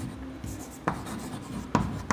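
Chalk writing on a blackboard: scratchy strokes, with two sharp taps of the chalk against the board, about a second in and near the end.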